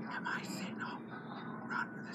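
Hushed, whispered speech in a few short breathy phrases.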